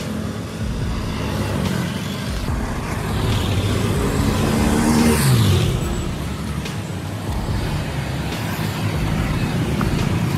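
Street traffic rumbling steadily. A motor vehicle passes close about five seconds in: its engine swells, then drops in pitch as it goes by.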